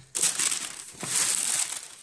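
Shoebox wrapping paper crinkling and rustling as a sneaker is handled over the box, in two spells about a second long each.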